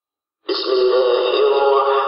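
A man's voice starts abruptly about half a second in, chanting in long held notes with a slowly wavering, ornamented pitch, in the style of Islamic religious recitation. It sounds thin, like an old band-limited recording.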